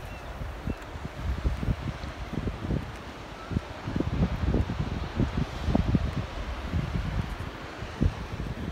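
Wind gusting across the phone's microphone, an uneven low rumble and buffeting.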